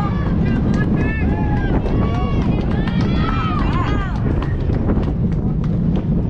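Several high-pitched voices shouting and calling out across a youth baseball field, with no clear words, over a steady low wind rumble on the microphone.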